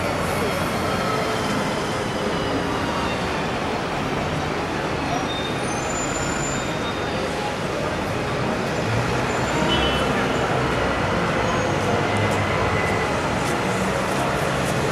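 Steady road traffic in a busy city street: double-decker buses, cars and vans passing close by, with a faint murmur of voices under it.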